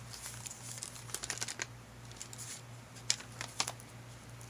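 Thick collaged paper pages of a spiral-bound junk journal crinkling and rustling as they are turned by hand, with clusters of short crackles a little after a second in and again about three seconds in.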